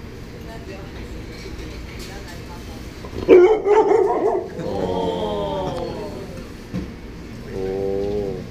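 A young dog gives a sharp bark about three seconds in, then a long drawn-out cry that sags in pitch at its end, and a shorter cry near the end.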